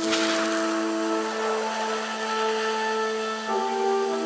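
Slow background music of long held chords, opening with a burst of hiss that fades over about a second and a half; the chord changes near the end.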